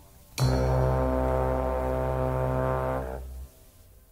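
Brass section holding one long, low sustained note that dies away a little past three seconds in.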